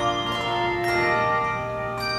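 Handbell choir ringing a piece: struck handbells sound chords of several notes that ring on. Fresh strikes come a few times in the first second, then the notes sustain and fade slightly toward the end.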